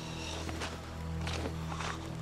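Three slow footsteps on earth over a low, sustained drone of film score.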